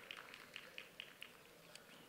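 Near silence, with a few faint, short high chirps in the background.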